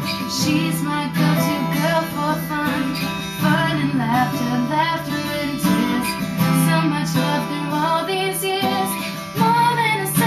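A song played live: an acoustic guitar strums chords while a young woman sings, with an electric guitar playing alongside.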